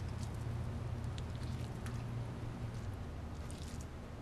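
Hands rubbing butter over raw turkey leg skin: faint soft squishing and small scattered clicks over a steady low hum.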